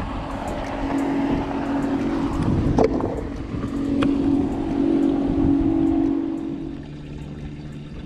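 A boat motor running steadily, louder around the middle and dropping to a quieter, lower hum near the end, with a couple of sharp clicks partway through.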